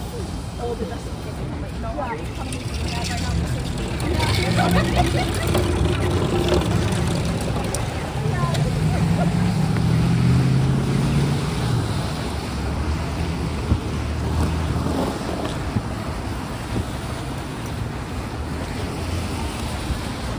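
City street traffic on wet pavement: vehicles passing with tyre hiss and engine rumble, the rumble swelling in the middle and easing off again, with scattered voices of passers-by.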